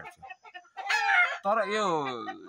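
A rooster crowing, a short high call about a second in.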